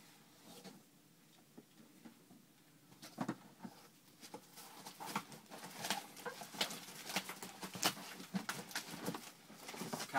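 Cardboard shipping boxes being handled: a run of knocks, scrapes and rustles, sparse for the first few seconds and then busier.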